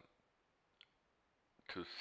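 Near silence with a single faint, short click a little under a second in, followed near the end by the start of spoken words.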